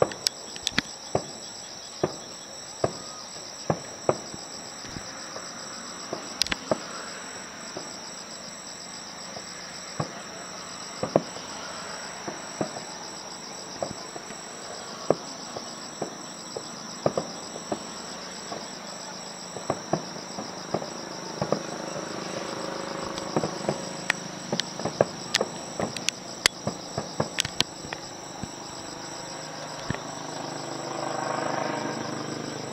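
Aerial firework shells bursting: an irregular run of sharp bangs that come thicker and faster in the last third. Under them runs a steady, high chirring of night insects.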